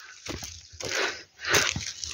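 Footsteps crunching on dry leaf litter, about three steps.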